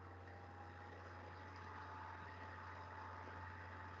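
Faint room tone: a steady low electrical hum with light hiss, and no other sound.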